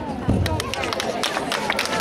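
Audience applause starting about half a second in, many quick claps over crowd chatter.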